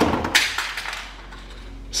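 Die-cast toy cars rolling down a plastic four-lane race track, a rattling rumble that dies away within the first second, with a sharp clack about a third of a second in. A single click just before the end.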